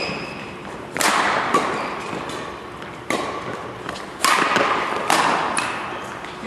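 Badminton rackets striking a shuttlecock in a doubles rally: sharp smacks about once a second, some hard and some lighter, each ringing on in the large hall.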